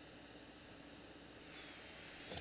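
Near silence: steady room tone, a faint hiss with a low hum. A faint soft noise with a thin high whistle comes in near the end.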